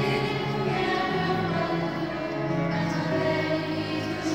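Children's choir singing, with notes held about a second at a time.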